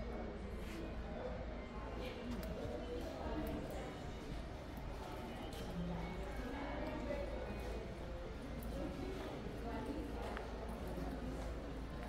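Indistinct background chatter of several people, with footsteps clicking on stone paving.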